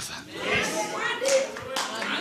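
Congregation clapping, with scattered voices calling out faintly in response.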